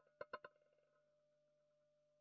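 Near silence, with a few faint clicks in the first half-second.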